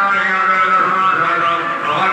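A male voice chanting mantras in a steady, droning monotone, continuous with no pause.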